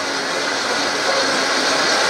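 Vitamix blender running at high speed on its smoothie program, a steady, even whir.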